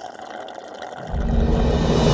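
A drink slurped through a straw with a hissy, liquid sound. About a second in, a loud low rumble rises and holds: trailer sound design building into the music.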